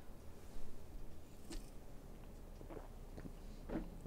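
A man drinking from a drinks can close to the microphone: a few faint swallows and small mouth sounds, spaced about a second apart.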